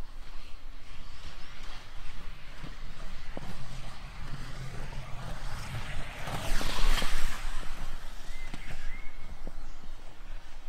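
Inline speed skate wheels rolling on an asphalt track as a skater sprints past close by; the rolling noise swells to its loudest about seven seconds in and then fades as he moves away.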